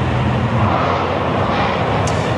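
Steady street traffic noise with a low engine hum, picked up outdoors by a live reporter's microphone.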